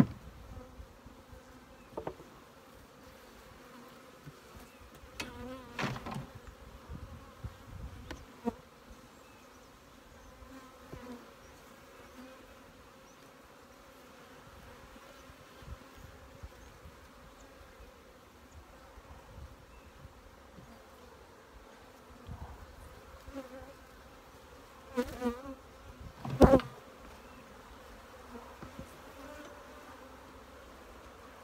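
Honey bees buzzing as a steady low hum around an open hive. Now and then comes a sharp wooden knock or click as frames are handled, the loudest about three-quarters of the way through.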